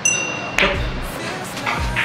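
A bright ringing chime sound effect sets in at the start, over background music with a steady beat. About half a second in comes a single sharp click: a pool cue striking the ball.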